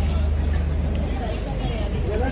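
Background chatter of a crowd of photographers and onlookers over a steady low hum.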